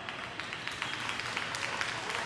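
Arena audience applauding with scattered hand claps.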